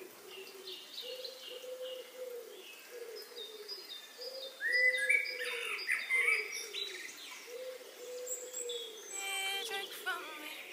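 Birdsong intro of a recorded pop song: a dove-like bird coos over and over while smaller birds chirp and trill above it, the chirps growing louder about halfway through. A singing voice comes in just before the end.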